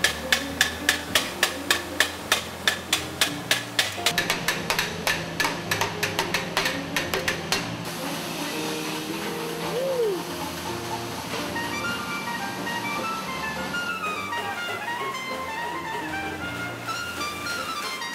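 Hand hammering of an annealed brass trumpet bell on a rod, about three blows a second, turning to quicker, denser strikes and stopping about eight seconds in. Background music plays under it and on alone afterwards.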